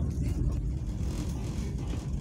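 Steady low rumble of a passenger train running along the track, heard from inside the carriage.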